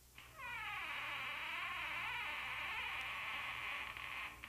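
A long, wavering high screech, starting about a quarter second in and holding for nearly four seconds, as the wardrobe door swings open.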